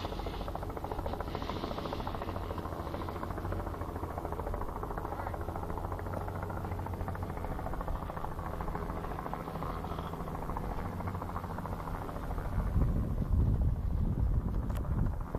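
A steady low mechanical hum, as of an engine or motor running. It turns into louder, uneven low rumbling near the end.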